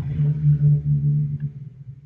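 A man's low, drawn-out hesitation hum ("mmm"), held at one steady pitch for nearly two seconds before fading, as he searches for the next word.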